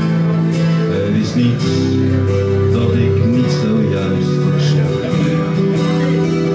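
An instrumental guitar passage played live: an acoustic guitar strummed steadily, with an electric guitar playing a melodic line over it.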